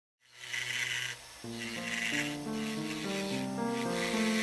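Rasping strokes of a jeweller's tool working a small workpiece, each lasting about half a second with short gaps between, and music of held, stepping notes coming in about a second and a half in.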